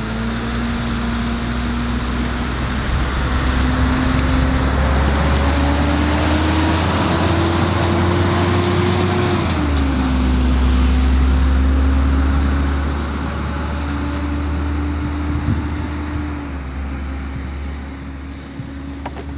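Heavy road traffic, with trucks passing close by. A loud engine drone climbs slowly in pitch and drops sharply about nine and a half seconds in, then again near the end, as the truck shifts up through its gears.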